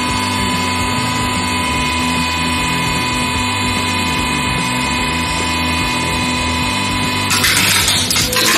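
Hydraulic press pump running with a steady whine as the ram descends. Near the end, a harsh crackling noise starts as the ram presses onto a plastic brick mug.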